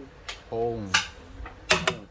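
Wooden chess pieces clicking down and knocking against a wooden board: a light click near the start, a sharper knock about a second in, and a quick cluster of clicks near the end as pieces are moved and taken.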